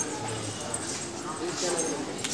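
Faint, indistinct voices in the background over a low room hum.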